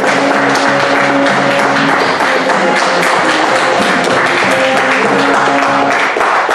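Audience applauding over music with held notes.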